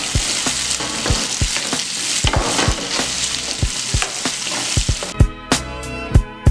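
Dogfish fillet pieces and sliced garlic sizzling in oil in a stainless steel skillet, stirred with a wooden spoon that scrapes and knocks against the pan; the garlic is being fried until golden. About five seconds in, music with a steady drum beat comes in.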